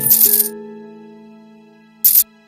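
A handful of coins clinking as they are poured into an open palm, a jingle of about half a second at the start. Soft background music with held notes fades away under it.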